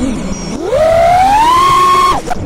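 FPV quadcopter's electric motors whining. The pitch sits low for about half a second, then climbs steeply as the throttle is punched and holds high.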